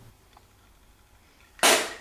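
Quiet room tone, then about one and a half seconds in a sudden short splutter as a man sprays out a mouthful of drink: a spit take.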